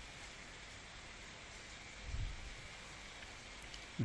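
Faint, steady hiss of room tone, with a soft low bump about two seconds in.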